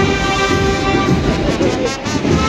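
Brass marching band of trumpets and trombones playing, with several notes held steadily in a sustained chord.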